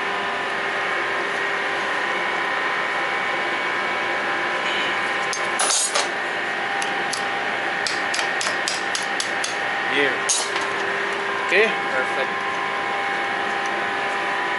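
A metal tool tapping wire binding onto a fire hose over its coupling: one louder knock about six seconds in, then a run of about ten quick, light taps. Under it runs a steady machinery hum with several held tones.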